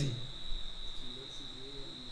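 A steady high-pitched tone holds through a pause in the talk, with a faint voice murmuring briefly about halfway through.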